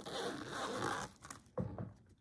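Zipper on a fabric pencil case being pulled for about a second, followed by a short soft knock as something inside is handled.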